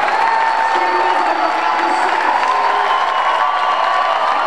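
A large crowd of students cheering and clapping in an auditorium, with sustained shouting voices over continuous applause.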